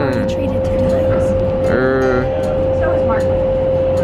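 Steady roar of an indoor skydiving wind tunnel with a constant mid-pitched hum running under it, and a woman talking over the noise.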